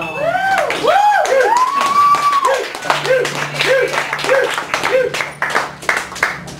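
Small audience applauding and cheering at the end of a poem: voices whooping in rising-and-falling calls, one long call about two seconds in and shorter repeated whoops after it, with hand-clapping growing thicker in the second half.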